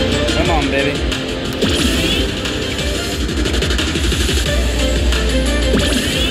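Money Link video slot machine playing its bonus-round music and spin jingles as two of its hold-and-spin respins play out.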